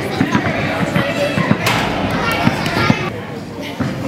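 Basketballs being dribbled on a hard gym floor: several balls bouncing at once in irregular, overlapping thuds, ringing in a large hall, under children's and adults' chatter.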